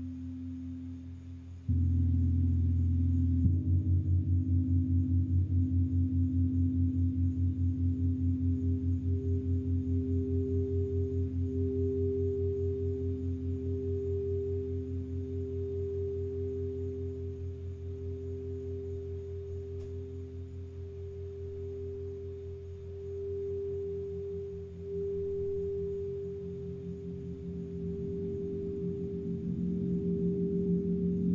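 Crystal singing bowls ringing in steady, overlapping pure tones with a fast pulsing waver. A louder low tone comes in suddenly about two seconds in, and another tone joins in the last few seconds.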